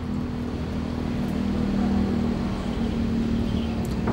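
A motor running steadily: a low hum with a steady drone that swells slightly toward the middle and eases again.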